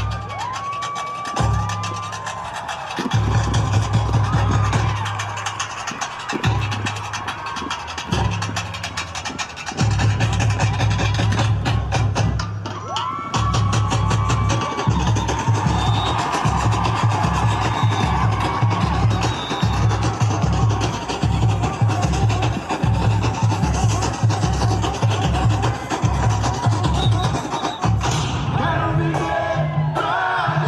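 Samba percussion music: heavy bass drums under fast, dense shaker and small-drum ticking. The bass drums drop out briefly a few times in the first ten seconds, then keep a steady beat.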